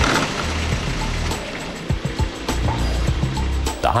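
Mechanical clicking and whirring over background music with a low bass line.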